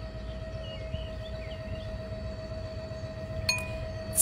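Faint birdsong: a few short, high chirps in the first half, over a steady hum and a low rumble. A sharp click comes near the end.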